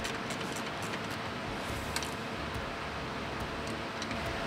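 Steady background noise with a few faint, irregular clicks of a socket ratchet tightening a 13 mm bolt on a transmission thermal bypass bracket.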